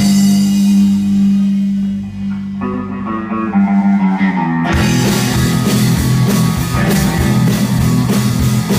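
Live rock band playing an instrumental passage. Electric guitar and bass let long low notes ring with no drums, then the drum kit and full band crash back in a little past halfway.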